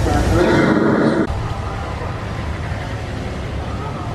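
Mine-train roller coaster rumbling along its track with riders' voices over it. The sound cuts off abruptly about a second in, leaving a steady outdoor hubbub of distant voices and low rumble.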